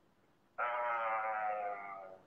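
A man's long, held "uhhh" hesitation sound, one steady drawn-out vowel starting about half a second in and lasting about a second and a half, trailing off slightly lower at the end.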